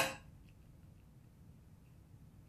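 Near silence: faint room tone, after the fading tail of a short clatter at the very start.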